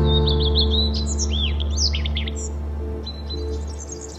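Small birds chirping in quick high, gliding calls, busiest in the first two seconds and thinning toward the end, over background music with a held low note and a pulsing mid-range note.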